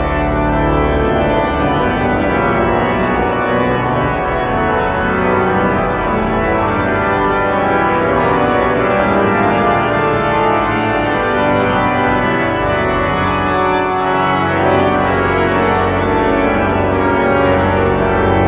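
Pipe organ playing a full sustained chordal passage. Deep pedal notes sound at the start, drop out about a second in, and come back in strongly near the end.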